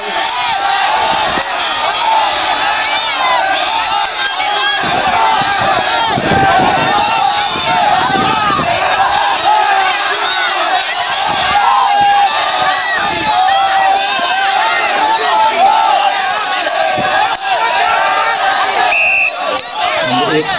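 A loud, continuous crowd of many voices shouting and cheering at once: spectators and coaches urging tug-of-war teams on during a pull. A short high tone sounds near the end.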